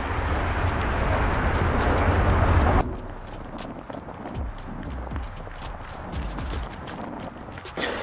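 Rushing wind noise on the microphone, heaviest in the low end, cuts off suddenly a little under three seconds in. Then come the quick, light footfalls of a runner's shoes on a rubber track, several steps a second.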